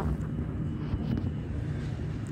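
Steady low outdoor rumble with no distinct event in it.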